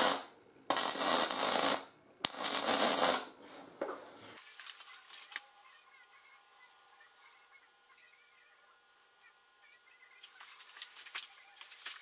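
MIG welding arc crackling in three short bursts over the first four seconds. The welder is a Fronius TransSteel 2200 running solid wire with C25 gas, laying a heavy, high-heat bead on steel square tube. The arc stops about four seconds in, leaving faint room tone.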